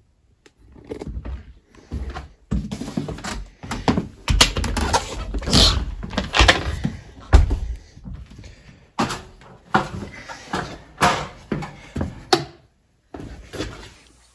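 Irregular knocks, thumps and rustling handling noise, as of someone moving about on a wooden floor while carrying the recording phone and crouching down.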